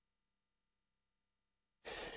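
Near silence, then near the end a short, breathy intake of breath from a man just before he starts speaking.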